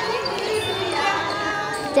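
A group of children and adults, with voices and music sounding together in a hall as they dance in a line.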